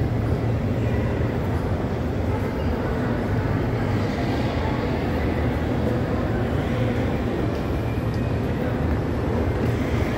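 Steady mall ambience: a low rumble under a murmur of shoppers' voices.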